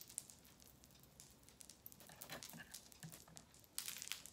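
Faint, scattered light clicks of a beaded necklace and chain being handled between the fingers.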